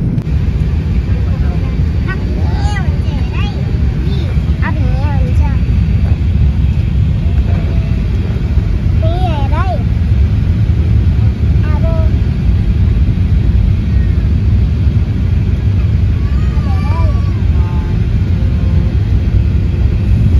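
Loud, steady low rumble of a jet airliner's cabin during the landing approach. A young child's high voice chirps and chatters in short bits a few times over it.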